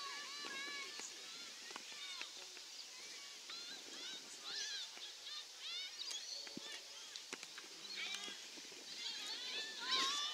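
Distant shouting and calling from players and spectators on an open football field, many short high calls overlapping one after another.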